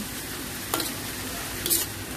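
Minced pork, onion and garlic sizzling steadily in hot oil in a wok as it is stirred, with a metal spoon striking and scraping the wok twice, about a second in and near the end.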